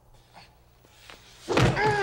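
A loud slam about one and a half seconds in, followed at once by a drawn-out muffled moan that falls in pitch.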